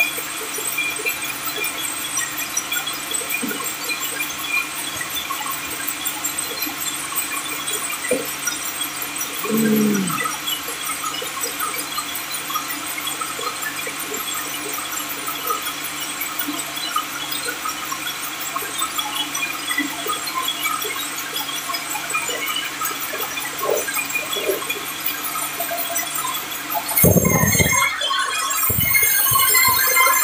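Industrial band sawmill running: the large vertical band saw gives a steady, dense mechanical hiss and hum, with a brief squeak about ten seconds in. Near the end come a couple of heavy thumps, then a louder, higher whine builds as the blade starts a new cut through the log.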